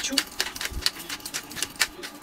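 Hand-twisted pepper mill grinding pepper over fish fillets: a rapid series of sharp clicks, about eight a second, from the grinding mechanism.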